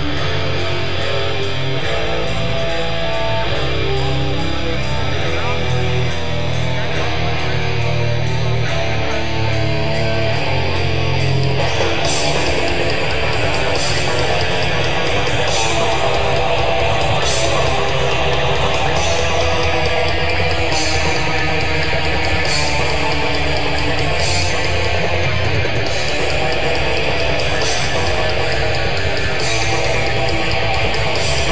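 Live death metal band: distorted electric guitars and bass play a slow, held-chord riff, then about twelve seconds in the drums come in with the full band and cymbal crashes land about every second and a half.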